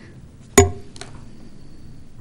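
A single sharp clink with a short ring, like a hard object such as a glass or cup knocked on the table, about half a second in, followed by a lighter click.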